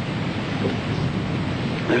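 Thunder rumbling low and steadily over the hiss of rain.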